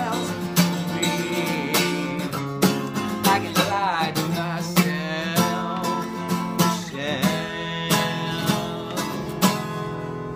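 Acoustic guitar strummed in a steady rhythm, about one or two strokes a second, with a man singing over it in places.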